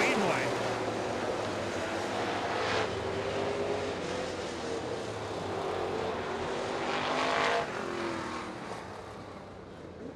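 Dirt-track Econo Bomber race cars' engines running on the track, with cars passing the flag stand about three seconds in and again around seven seconds in; the sound fades out near the end.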